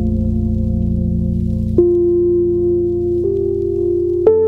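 Ambient music of sustained chords over a low drone. A new chord comes in sharply just under two seconds in, and the upper note steps up about a second later.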